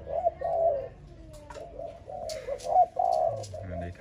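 Spotted dove cooing: a run of low coos in several short phrases, with a few light clicks among them.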